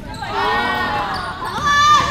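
High-pitched voices shouting and calling out across a gym, with a long held shout near the end, over a basketball bouncing on the hardwood court.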